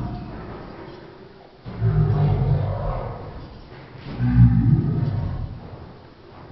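A roar-like sound effect hits twice, about two seconds in and again about four seconds in, each starting suddenly and fading over a couple of seconds. Each hit falls in time with another touch added to the kick-up count.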